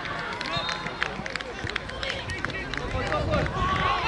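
Players and touchline spectators calling out across an outdoor football pitch during play, with many scattered short clicks and knocks.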